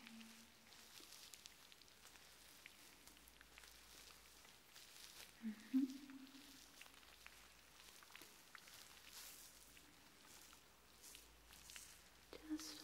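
Faint soft rustling and light crackles of hands and fingers moving close to the microphone, as in picking through hair. A short soft hum from a woman comes about halfway through.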